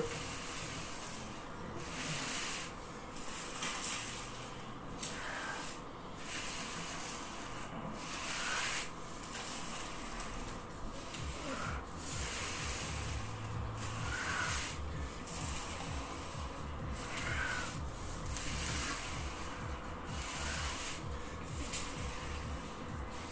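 Paper plates sliding under the hands on the floor during a plank-position exercise: a rhythmic scraping, about once a second.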